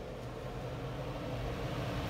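Minneapolis Blower Door fan running, a steady rush of air that gradually gets a little louder, as it blows air out of the house to depressurize it.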